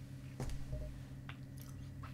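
Faint wet mouth sounds from a mouthful of chewing tobacco as a spit cup is brought up, with a sharp click about half a second in and a few small ticks after it.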